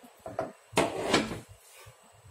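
Hand setting lumps of rice dough down on a large stainless-steel plate: a few light taps, then a louder scrape and knock against the metal about three-quarters of a second in, lasting about half a second.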